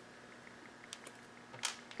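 Faint handling noises at a workbench: a few light clicks about a second in and a short rustle near the end as small connector parts and wire are picked up by hand.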